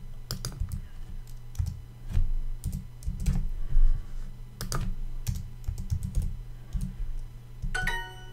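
Computer keyboard typing in irregular keystrokes, mixed with mouse clicks. Just before the end comes Duolingo's short correct-answer chime, a bright pitched ding that confirms the typed answer.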